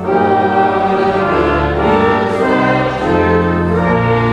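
Church congregation singing the gospel acclamation with organ accompaniment, in held chords that change every second or so.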